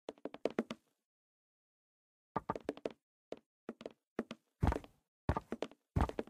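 Footsteps in short runs of quick knocks, with a couple of heavier low thumps near the end and dead silence between the runs.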